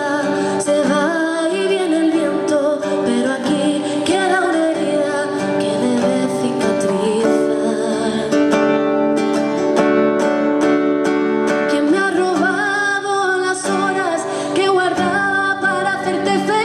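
A woman singing a song and accompanying herself on acoustic guitar. Around the middle there is a steadier stretch of held notes with strummed chords before the melody moves on again.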